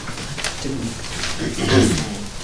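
A person's voice, indistinct and off-microphone, ending in a short, louder low vocal sound near the end whose pitch falls.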